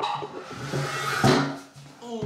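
Handling noise of a camera being set down and adjusted on a kitchen counter: rubbing and shuffling against the lens and surface, with a sharp knock about a second and a quarter in.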